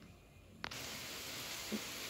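Near silence, then a click about two-thirds of a second in, followed by a steady, even hiss of background noise.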